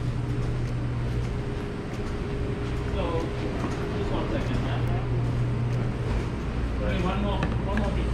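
Indistinct talk in a shop, over a steady low hum of room tone, with voices about three seconds in and again near the end.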